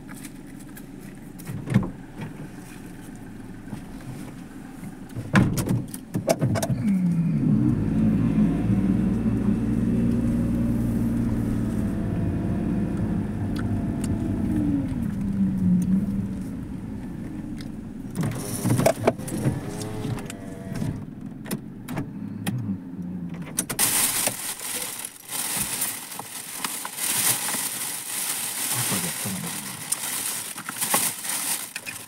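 Car engine and road noise inside the cabin as the car drives: after a few clicks and a knock, the engine note rises about six seconds in, holds, and falls away. In the last few seconds a crackling rustle takes over.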